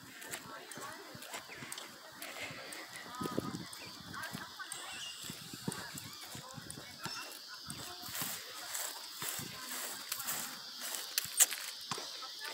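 Outdoor park ambience: distant voices and honking bird calls over a steady background hiss, with a few sharp clicks near the end.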